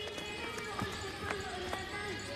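Soft thuds about twice a second under faint voices in the background.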